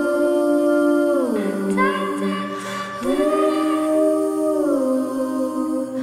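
A multitracked female voice hums in wordless, a cappella-style harmony, holding chords that shift every second and a half or so.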